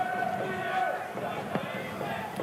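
Pitch-side ambience at a football match: players' voices calling out over a low murmur of spectators, with one short thump about one and a half seconds in.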